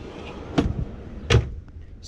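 Wooden pull-out fridge drawer pushed shut on its drawer slides: a rolling, rushing slide noise with two knocks, the louder one about halfway through as the drawer closes.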